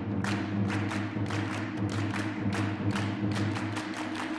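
Wind orchestra playing a sustained low chord, cut through by quick, sharp percussion strikes about three or four a second.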